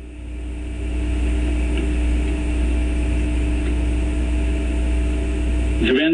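A steady machine hum with a deep low rumble and a few steady tones over it. It swells up over about the first second, then holds even.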